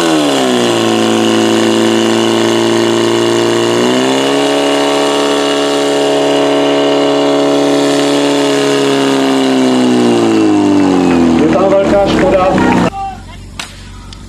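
Portable fire pump's engine running hard under load as it feeds the attack hoses. Its pitch sinks at first, rises about four seconds in and holds steady, then falls away as it is throttled back near the end. After that, sudden quieter crowd voices follow.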